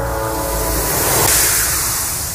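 Horror soundtrack sound design: a loud rushing noise swell over a low rumble, building to a peak about halfway through and then fading away.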